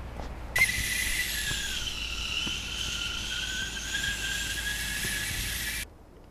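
Kettle on a gas canister camping stove whistling at the boil: a high whistle starts suddenly about half a second in, sags slightly in pitch, then holds steady and cuts off abruptly near the end, over a low steady rumble.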